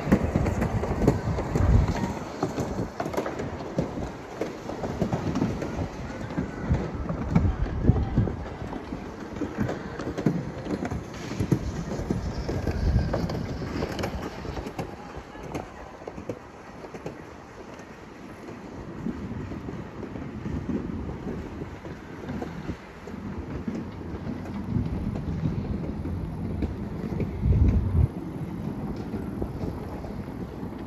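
Wind buffeting the microphone during a chairlift ride, a gusty low rumble that rises and falls. About 28 s in, a louder low rumble comes as the chair passes a lift tower.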